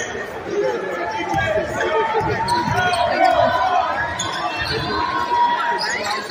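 A basketball being dribbled on a hardwood gym floor, a few low bounces, under steady crowd chatter in a large, echoing gym.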